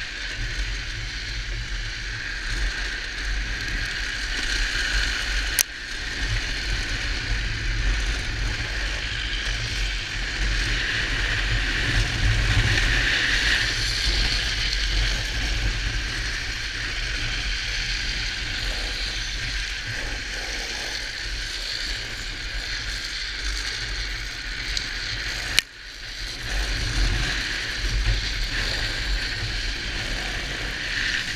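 Drift trike coasting fast down a paved road: a steady rush of wheel and wind noise with a ratcheting, rattling mechanical sound, broken by two sharp clicks, one about six seconds in and one near twenty-six seconds.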